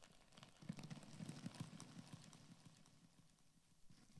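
Thin plastic carrier bag crumpled and rustled close to a microphone: a faint, irregular crackle of small clicks, busiest from about a second in.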